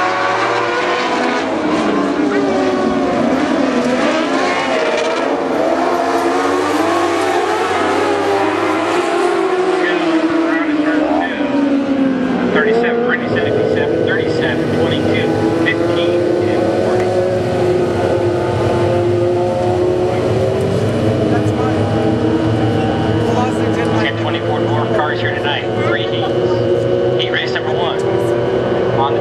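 A pack of dwarf cars, small motorcycle-engined dirt-track race cars, running in formation on the track. Their engine notes rise and fall in pitch as they pass for the first dozen seconds, then settle into a steadier drone of several engines.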